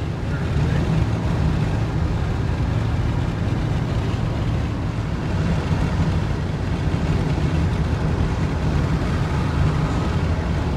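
Steady low rumble of road and engine noise heard from inside a car cruising on a highway.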